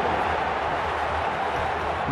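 Steady stadium crowd noise carried on a radio football broadcast, with a low hum underneath.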